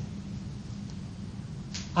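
Pause in speech: a steady low background hum with faint hiss, the room tone of the recording.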